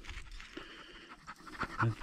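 Quiet panting breaths.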